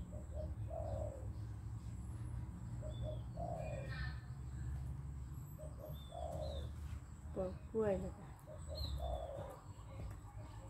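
A dove cooing, a short phrase of a few low notes ending in a longer one, repeated four times about every two and a half seconds, with faint small-bird chirps and a low steady hum underneath.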